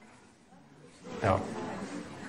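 Quiet room tone for about a second, then a man's voice saying a drawn-out "nou".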